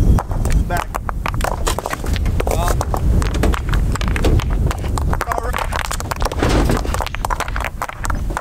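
Field rocks being tossed from a pickup bed onto a rock pile, clacking and knocking against each other and the truck bed many times in quick, irregular succession.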